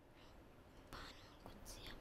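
Near silence, with a few faint whispers.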